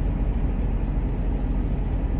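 Heavy truck cab at road speed: a steady, even drone of the diesel engine with tyre and road noise.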